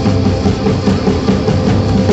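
Live rock band playing: drum kit, electric guitars and keyboard, loud and unbroken.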